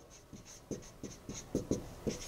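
Dry-erase marker writing on a whiteboard: a quick run of short, faint strokes, several a second.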